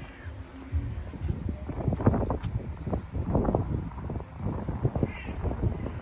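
A bird calling twice, once right at the start and once about five seconds in. Underneath runs uneven low rumbling on the microphone, louder than the calls.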